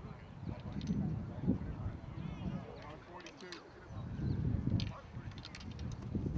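Indistinct voices talking at a distance, with a low rumble that swells about a second in and again around four seconds in.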